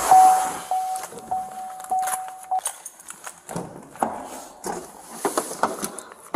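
A steady electronic tone with short breaks, lasting about two and a half seconds, followed by scattered knocks and movement noise.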